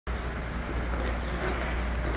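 Steady low rumble and hiss of an indoor ice rink's background noise.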